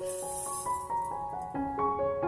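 Background piano music: a gentle melody of single notes, each held and overlapping the next.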